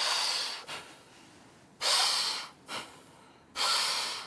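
Forceful, rhythmic abdominal breathing by a man: three strong breaths about two seconds apart, each followed by a short, weaker one.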